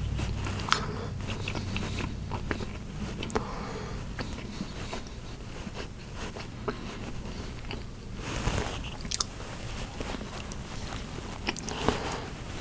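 Close-miked mouth sounds of a man biting and chewing food, picked up by a lapel microphone on his shirt: many small scattered clicks, with one louder, noisier burst about eight and a half seconds in.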